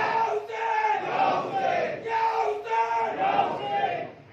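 Loud voices chanting in long held notes, one short phrase after another about once a second, ringing in a reverberant hall.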